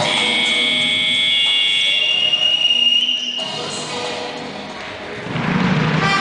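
Dance-routine music ending on a long held high note, which cuts off about three and a half seconds in. A quieter hall din follows and swells again near the end.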